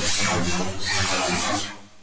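Preset preview of a granular drum sound from a software instrument: a dense, noisy texture laced with sweeping pitch glides. It stops shortly before the end.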